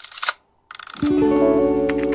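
Two short camera-shutter clicks about two-thirds of a second apart, with a moment of silence between them. Then plucked acoustic-guitar music comes in about a second in.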